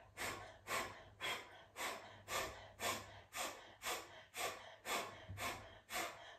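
Breath of fire: a person's rapid, forceful exhales through the nose in a steady rhythm, about two a second.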